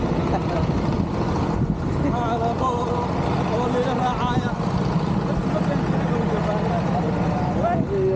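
A vehicle engine running steadily at low speed, with people's voices calling out over it now and then.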